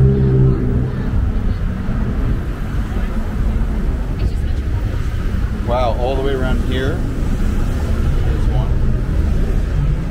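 Street traffic: a steady low rumble of cars on the road, with a vehicle's engine hum fading out in the first second. A person's voice is heard briefly about six seconds in.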